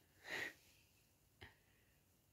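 Near silence in a small room, broken by one short, faint breath-like noise about a quarter second in and a brief faint tick about a second and a half in.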